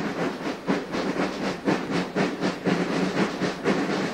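A large corps of marching snare drums playing a quick, steady rhythm of crisp strokes.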